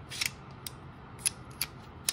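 A handful of sharp, irregularly spaced clicks of hard plastic and metal parts: a thermal monocular and a PVS-14 night vision device being handled on their helmet bridge mount and dovetail shoes.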